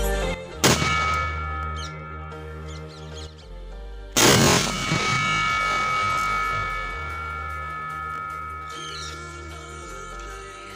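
Background music with two sudden loud bangs, the first about half a second in and a bigger one about four seconds in, as a sutli bomb (jute-string firecracker) tied to a small LPG cylinder goes off.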